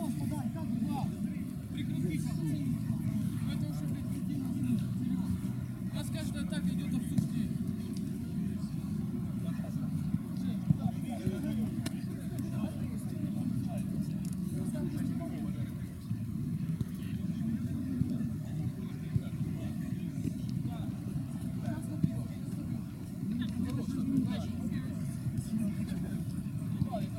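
Indistinct voices of players talking across an outdoor pitch over a steady low rumble, with a few brief sharp knocks.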